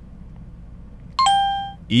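A two-note chime about a second in: a very short higher note, then a lower note that rings and fades over about half a second.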